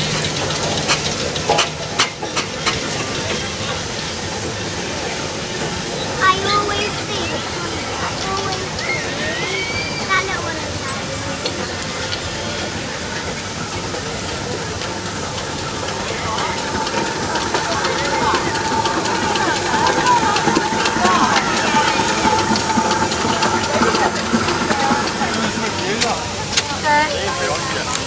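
Steam traction engines hissing steam, with people talking nearby; a steady high tone comes in for several seconds past the middle.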